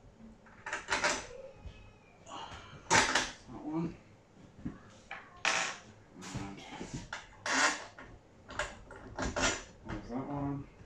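Plastic clicks and knocks from the vacuum's folding handle and cable clips being handled and fitted, about ten sharp clicks spaced irregularly.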